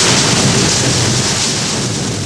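Steady loud rushing noise with a low rumble, like rain or a storm, slowly fading.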